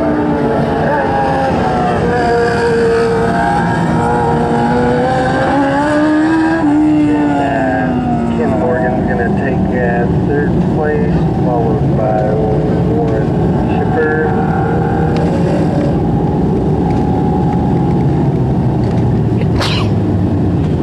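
Dwarf race cars' motorcycle engines running in a race, several at once, their pitch rising and falling as they accelerate and lift through the turns; louder in the first half. A sharp click near the end.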